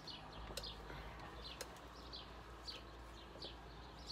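Faint small-bird chirping: short, falling high notes, two or three a second, with a couple of faint clicks.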